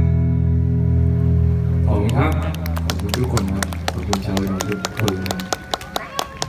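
Amplified acoustic guitar, its last chord ringing on for about two seconds and fading, then a short bit of voice and scattered sharp hand claps of applause.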